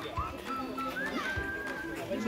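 Indistinct voices of people nearby over background music.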